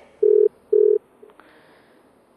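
Telephone busy tone over the phone line: short beeps of one steady pitch about half a second apart, two loud and then a faint third. It signals that the caller's line has dropped.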